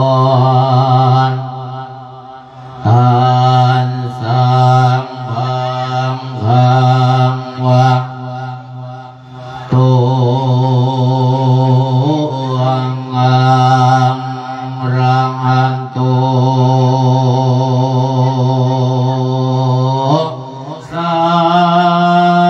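A Thai Isan monk singing a thet lae (melodic sermon) into a microphone: one male voice drawing out long melismatic phrases with a wavering vibrato, broken by short breaths. The longest phrase is held for about ten seconds in the second half.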